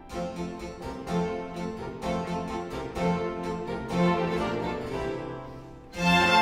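Baroque orchestra of violins, cellos, double bass and harpsichord playing a light, bouncy piece, the harpsichord plucking crisp notes over a bass line that falls about once a second. The music dips in level near the end.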